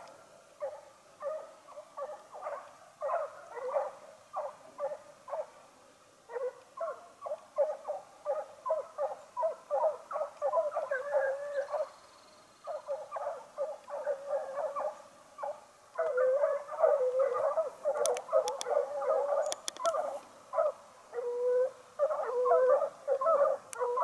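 A pack of fox-hunting hounds baying in the distance on the chase, a near-continuous chorus of short, overlapping yelps with brief lulls.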